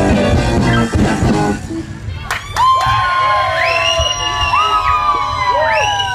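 A live rock band's drums and guitars end a song in the first second and a half, then an audience cheers, with high whoops and shouts rising and falling through the rest.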